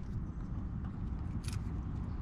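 Low, steady rumble of wind and handling noise on the microphone, with a few faint clicks and one sharper click about one and a half seconds in as a hand works the dust cap of a locking hitch pin.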